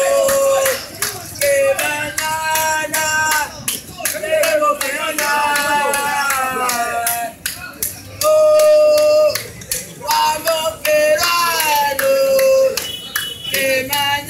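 Male football supporters singing a terrace chant, with hand clapping along to it.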